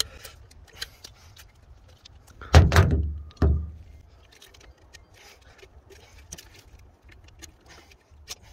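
Two dull thumps about a second apart near the middle, amid light clicks and rustling of gloved hands handling parts at an open oil filter housing.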